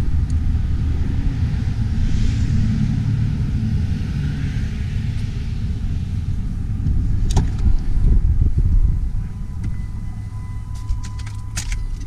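A steady low rumble, with a sharp click about seven seconds in as the Jeep Wrangler's door is opened and a run of light metallic clicks near the end as a set of keys is handled.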